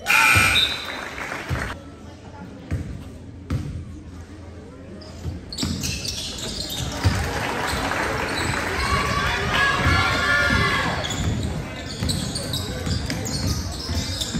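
Basketball being dribbled and thumping on a hardwood gym floor during a youth game, with many voices echoing in the hall. A sudden loud burst of voices comes at the very start, and the crowd noise thickens and rises about halfway through as play runs up the court.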